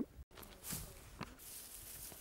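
Faint rustling of dry grass and brush being handled, with a single sharp click a little over a second in.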